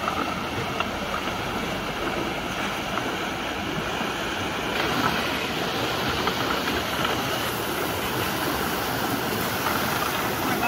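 Fast, swollen floodwater rushing and churning down a walled concrete channel, a steady rushing noise.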